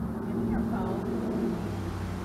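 A vehicle's steady engine hum that swells and then fades away about a second and a half in.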